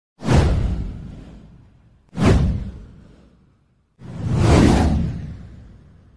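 Three whoosh sound effects of an animated title intro, each sweeping in and fading away. The first two, about two seconds apart, come in sharply. The third, about four seconds in, swells up more gradually and lasts longer.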